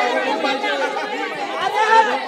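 Several voices talking over one another at once, a loud overlapping chatter.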